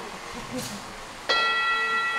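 An empty metal singing bowl struck once about a second in, then ringing on with several clear, steady tones. With its contents taken out, the bowl rings freely.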